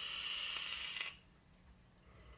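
A drag being pulled through a vape mod: a steady hiss of air drawn through the atomizer that stops a little over a second in.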